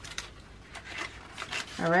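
Paper banknotes, a twenty and three ones, being handled and slid into a paper envelope: a run of light, crisp rustles and flicks.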